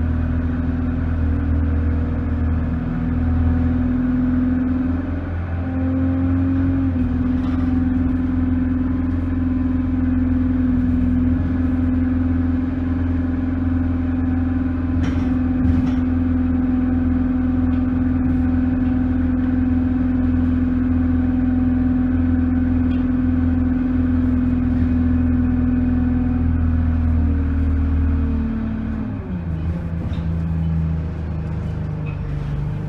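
Single-deck bus running on the road, heard from inside the passenger cabin: a steady engine and drivetrain drone holding one pitch, which drops away near the end as the bus eases off.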